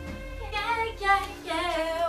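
A woman's high singing voice with a wavering vibrato, coming in about half a second in and carrying on through, over a fading low drone.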